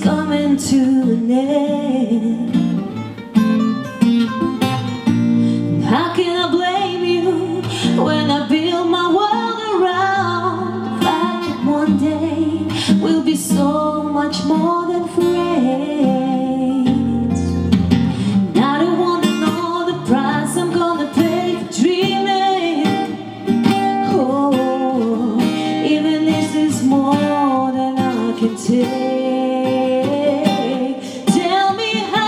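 A woman singing a song, accompanied by two acoustic guitars plucked and strummed.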